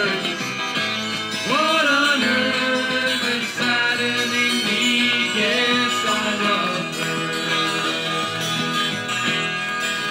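Acid folk song played from a 45 rpm vinyl single: an instrumental passage with guitar, its lead line bending in pitch about one and a half seconds in and again around five seconds.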